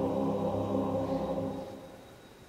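Men's choir holding a steady chord that is cut off about a second and a half in, then dies away in the hall's echo.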